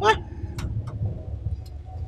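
A man's short spoken "What?" followed by a steady low background rumble, with a few faint clicks.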